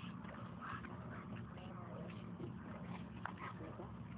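Faint sounds of dogs walking on leads over gravel, over a steady low background hum.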